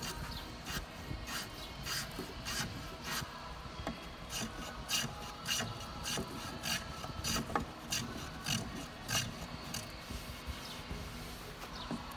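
Small hand plane shaving the curved edge of a wooden half-hull model, a run of short, quick scraping strokes at about two a second as the hull is finish-shaped.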